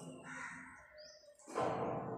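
Faint bird chirps, with a louder harsh crow-like caw starting suddenly about one and a half seconds in.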